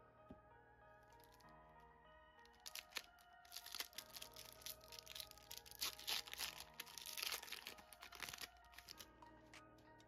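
Foil wrapper of a Pokémon booster pack being torn open and crinkled by hand: a run of crackly rustling from about three seconds in to near the end, over quiet background music.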